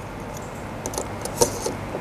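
Light metallic clicks and scrapes of an SFP transceiver module being handled and slid into a network switch's SFP port, several small clicks from about a second in.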